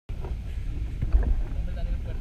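Wind buffeting the microphone as a low rumble that swells about a second in, with faint voices in the background.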